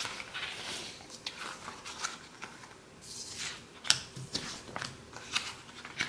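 Paper planner pages and sticker sheets being handled: soft rustling with scattered light clicks and ticks, the sharpest a little before the four-second mark.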